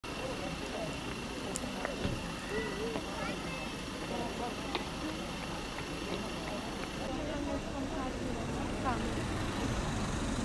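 Street ambience: indistinct voices of people talking over a steady traffic hum.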